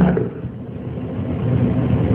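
A steady background noise with no clear tone or rhythm, growing slowly louder, in a pause between a man's speech.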